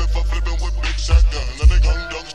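Slowed-down, chopped-and-screwed hip hop with a deep, heavy bass line, two hard bass hits in the second half, and the bass dropping out right at the end.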